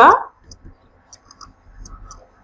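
Faint, irregular light clicks of a stylus tapping a tablet surface while words are handwritten on screen.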